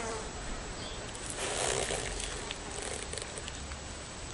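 A short burst of insect wing buzzing, about a second long, starting a little over a second in.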